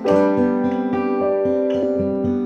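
Acoustic guitar and piano playing together in an instrumental gap: a chord is struck at the start and rings on, with light, even strumming underneath.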